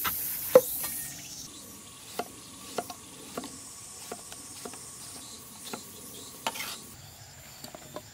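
Cleaver chopping winter melon on a round wooden chopping board: about ten sharp knocks at irregular intervals as the blade cuts through the flesh and strikes the board, the loudest about half a second in.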